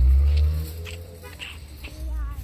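A car engine running close by, dying away about half a second in, followed by a few faint clicks.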